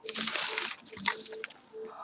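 Crinkling rustle of a thin gift bag being handled and opened, loudest in the first second, then fainter scattered rustles.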